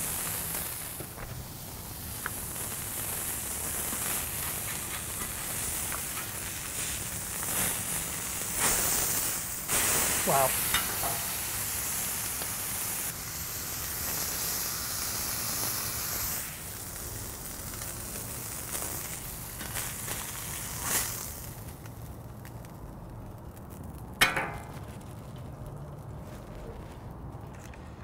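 Smashed beef patty sizzling on a Blackstone flat-top griddle, a steady hiss that drops off sharply about three quarters of the way through. A single sharp knock comes near the end.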